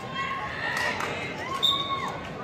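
Shrill yelling from players and spectators as a kabaddi raider is tackled to the ground, with a couple of thuds from the tackle about a second in.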